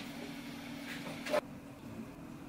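A faint steady hum with one short, sharp tap about one and a half seconds in.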